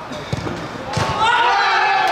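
A football being struck hard, with a thud about a third of a second in and a second sharper thud about a second in. A man's long shout follows.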